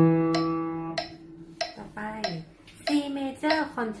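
An upright piano's last scale note rings and fades away within the first second, over steady sharp ticks about every 0.6 s. A voice then speaks, announcing the next scale.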